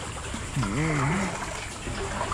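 Kayak paddle strokes trickling and splashing water inside a corrugated metal culvert pipe. About half a second in, a wordless voice call swoops up and down in pitch for under a second.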